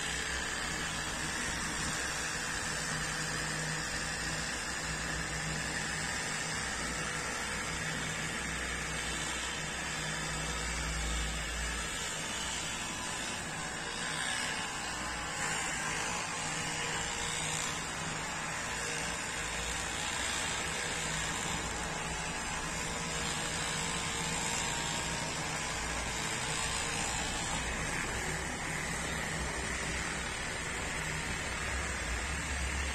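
Corded electric hair clipper running steadily while cutting a man's hair.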